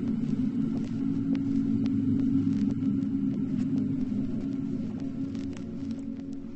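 A low, steady droning hum made of several held low tones, with a few faint clicks scattered over it; it eases off slightly near the end.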